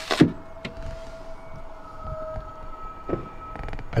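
A car running close by, a steady hum heard from inside a parked van, with one sharp knock just after the start.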